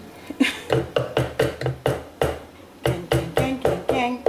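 A spatula knocked again and again against the rim of a blender jug, about five quick knocks a second with a short pause midway, shaking off blended pepper paste. A short laugh is mixed in.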